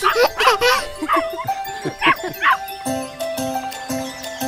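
Cheerful cartoon children's-song intro music, with a cartoon puppy barking in short yips and children's excited voices over it in the first half. After that only the steady instrumental intro plays.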